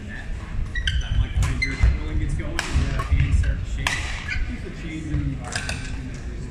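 Badminton doubles rally in a large echoing sports hall: repeated sharp racket strikes on the shuttlecock, with court shoes squeaking and footsteps on the hardwood floor.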